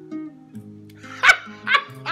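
Classical guitar holding a few soft notes, then a man's voice giving two short, loud barking yelps about half a second apart near the end: the start of a laugh voicing the hyenas mocking the matriarch.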